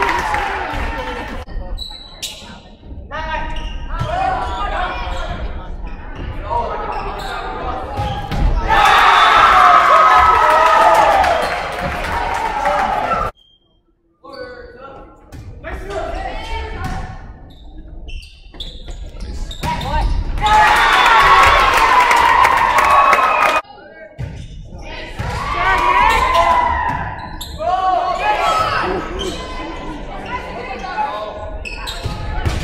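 Volleyball rally in a gymnasium: the ball is struck and bounces on the hardwood court, with players and spectators calling out loudly in bursts, all echoing in the large hall.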